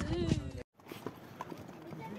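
A child's voice that cuts off suddenly, then horses walking on a stony dirt trail, their hooves clopping, with faint voices in the background.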